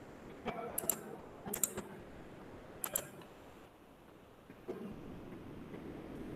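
Faint, separate clicks of computer keys at the lecturer's computer: about four sharp presses spread over the first three seconds, then only faint room noise.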